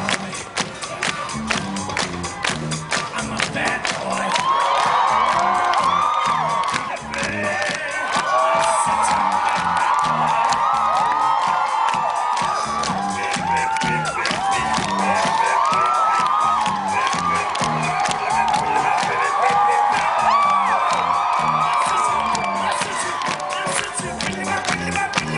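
A live band plays through a PA with a steady, driving drum beat. From about four seconds in, a crowd cheers and screams loudly over the music, easing off near the end.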